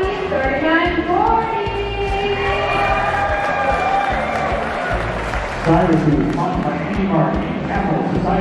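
Loud background music playing through a public-address system, with a voice coming in over it about six seconds in.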